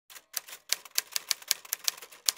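Typewriter keystroke sound effect: a quick run of sharp key clacks, about six a second and slightly uneven.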